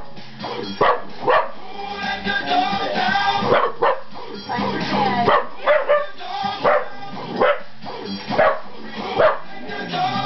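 Dog barks, short and sharp, repeated roughly every half second to a second over music with singing.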